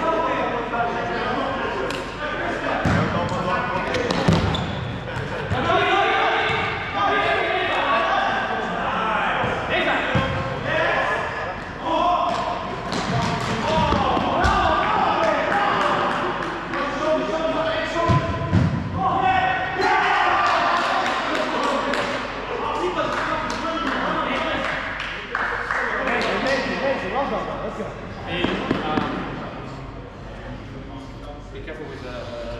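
Futsal ball being kicked and bouncing on a sports-hall floor, with sharp knocks scattered through, under constant shouting and calling from the players.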